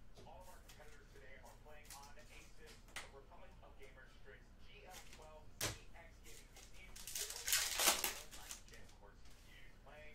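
Quiet handling of trading cards with a couple of sharp clicks, then a louder crackling rip of a foil trading-card pack wrapper being torn open about seven seconds in, lasting about a second and a half.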